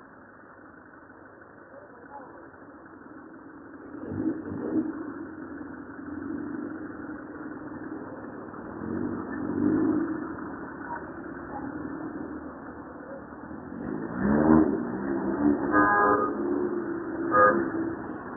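Suzuki-engined 1946 Morris street rod driving around, its engine note swelling as it accelerates about four, ten and fourteen seconds in. A few louder, harsher sounds stand out near the end.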